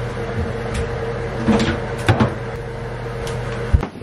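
A front-loading laundry machine running with a steady low hum, while a few short knocks and clunks come from the machine door and a rope laundry basket being handled. The hum cuts off abruptly just before the end.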